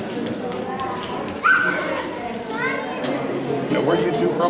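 Children playing and calling out in a large hall over steady background chatter, with one sudden high-pitched child's shout about a second and a half in.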